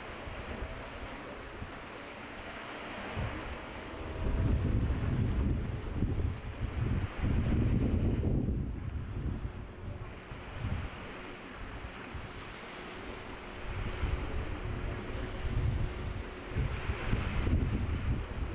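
Wind buffeting the microphone in heavy, uneven gusts over the wash of a choppy sea.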